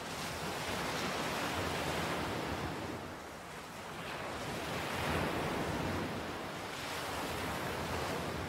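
Sea surf washing in: a rushing noise that swells and eases every few seconds.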